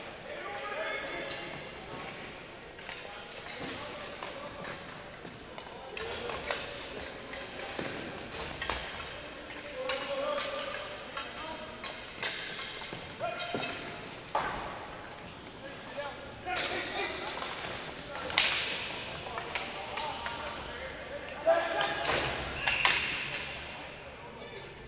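Ball hockey play: plastic ball and sticks clacking on the dry arena floor and knocking against the boards, with players calling out, echoing in a large arena. The sharpest cracks come in the last third, in a scramble in front of the net.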